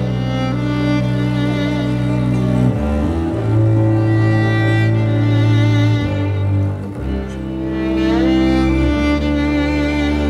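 A string ensemble of violin and lower strings plays the instrumental opening of a song: long bowed chords over a low bass note that shift every few seconds, with an upward pitch slide in the upper strings near the end.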